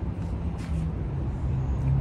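Steady low rumble of nearby vehicle traffic with a constant low hum underneath.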